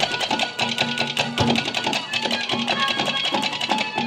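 Instrumental passage of Haryanvi ragni folk music: fast, steady drumming under held melody notes.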